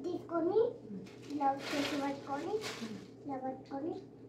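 A young child and a woman talking, with a thin plastic bread bag crinkling for about a second and a half in the middle.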